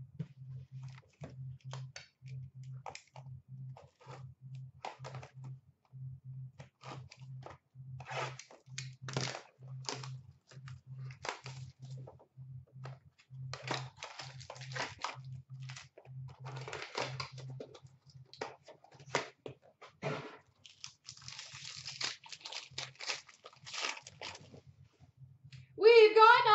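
Hockey card packs being opened by hand: a run of short crackles and clicks as the packaging is torn and the cards handled, with a denser stretch of crinkling about three-quarters of the way through.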